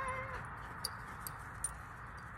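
A dog whining: a wavering, high whine that cuts off about a third of a second in, followed by three faint sharp ticks.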